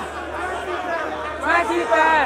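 A man's voice talking loudly over a stage PA, with chatter from the crowd, the voice getting louder near the end, over a steady low hum from the sound system.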